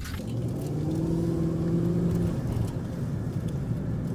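Cargo van's engine heard from inside the cab while driving slowly, its hum rising gently as it pulls ahead over a low road rumble, then fading back a little past halfway.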